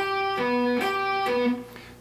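Electric guitar playing four alternate-picked single notes, about 0.4 s each: G on the third string's 12th fret and B on the D string's 9th fret, twice over, crossing strings between each note. The last note fades out near the end.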